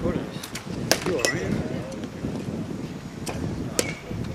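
Several sharp cracks of baseball bats hitting pitched balls, the loudest about a second in, over background talk.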